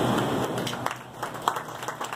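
Audience applauding, with a scatter of individual hand claps starting about half a second in.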